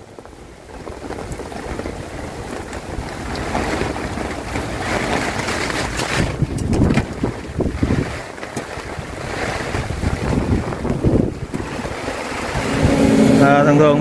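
Rain and gusty wind buffeting the microphone, a rushing noise that swells and dips, with a few brief knocks about six to seven seconds in.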